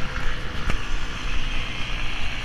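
Steady rumble of city road traffic passing along a wide avenue, with a single short tap about two-thirds of a second in.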